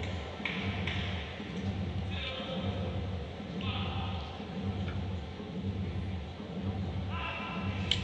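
Quiet sports-hall ambience: a steady low hum with faint, distant voices.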